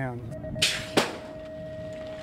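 BMX starting gate: the long final tone of the start sequence sounds, with a burst of hiss as the pneumatic gate releases and a sharp bang about a second in as it drops.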